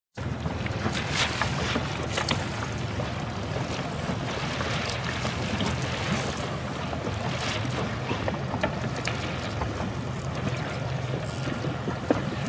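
A small motorboat's engine running steadily at low speed, with wind buffeting the microphone and occasional water splashes against the hull.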